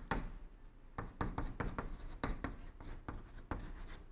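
Chalk writing on a blackboard: a quick run of short chalk strokes and taps as characters are written, with a brief pause about half a second in.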